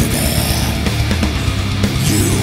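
Heavy metal song with distorted rhythm guitars and harsh death-metal vocals, the chorus vocal line chopped short to lock in with the guitar rhythm.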